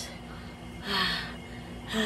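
A short, audible, gasp-like breath about a second in.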